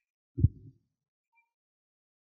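A single short, low thump about half a second in, then silence.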